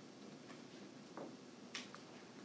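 Quiet room tone with a few faint, short, sharp clicks, the sharpest one a little before the end.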